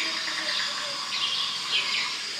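Small birds chirping in short repeated calls over a steady background hiss.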